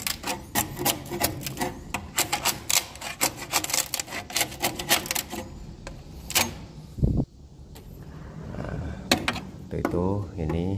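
A metal scraper blade worked under a finished, thick swiftlet nest on a wooden nest plank, with fast irregular clicks and cracks as the nest is pried loose. There is one heavy knock about seven seconds in.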